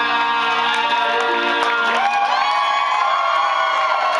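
Live band with guitar and keyboards holding long, steady chords. About halfway through, audience cheering and whoops join in.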